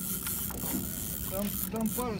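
Spinning reel being cranked, its gears turning, as a hooked fish is reeled in.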